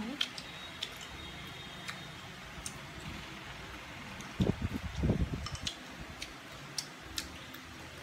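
Eating at a table: scattered light clicks of chopsticks against plates and bowls, with chewing. A short, louder, low muffled sound comes about four and a half seconds in.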